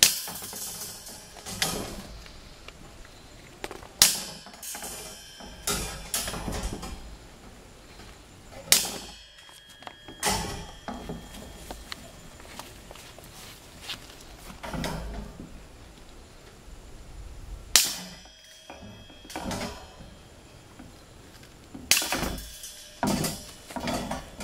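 Bolt cutters snipping through galvanized cattle panel wire: about a dozen sharp snaps at irregular intervals, with quieter handling noise of the wire panel between them.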